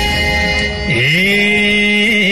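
Live Nepali dohori folk music. About a second in, a long held note slides up into pitch and is sustained, sung over the band's accompaniment.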